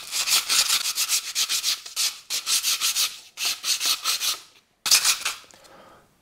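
Hand sanding the edges of a long, thin wooden strip with a roll of 150-grit sandpaper to break the sharp arrises: quick back-and-forth rubbing strokes in several runs with brief pauses, the last run fading near the end.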